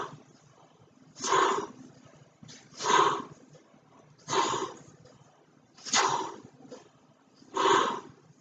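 A large latex weather balloon being blown up by mouth: loud, breathy rushes of air about every second and a half, with short quiet gaps between.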